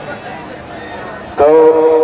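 Murmur of a large outdoor football crowd. About one and a half seconds in, a man's voice comes in loudly over a public-address loudspeaker.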